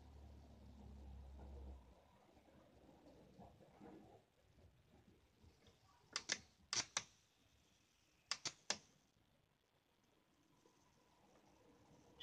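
Faint low hum in the first two seconds, then sharp snaps: two about half a second apart just after halfway, and three more in quick succession about two seconds later. These are typical of high-voltage sparks jumping a spark gap as the capacitor is charged.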